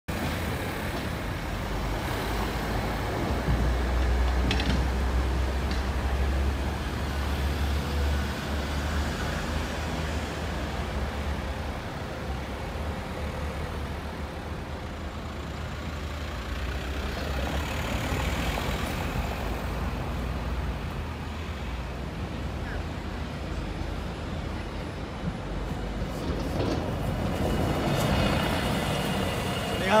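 City street traffic: vehicle engines running and passing, with a low rumble that is strongest for several seconds starting about three seconds in.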